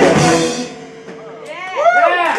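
A live rock band with electric guitars, bass and drums ends a song: the last chord cuts off within about half a second, leaving one note that fades out. About a second and a half in, the audience starts whooping and cheering.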